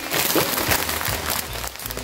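A clear plastic bag of lettuce crinkling as it is handled: a dense run of small crackles.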